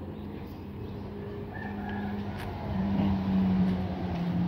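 A motor vehicle's engine running with a steady low drone that grows louder in the last second or so. A short high chirp comes about halfway through.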